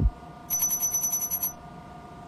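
A high, fast-trilling electronic ring, like a telephone ringer, lasting about a second and starting about half a second in.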